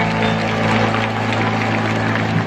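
Live concert band holding a closing chord, steady low notes, while the arena crowd starts to cheer and applaud.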